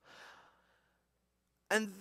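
A man's short, soft breath, a sigh-like puff of air picked up close on a headset microphone, at the very start. Then silence, and a man begins speaking near the end.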